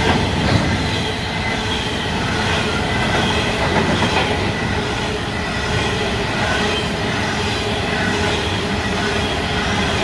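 Coal hopper wagons of a long freight train rolling past: a steady rumble of steel wheels on the rails, with a faint, wavering high-pitched squeal from the wheels on the curve.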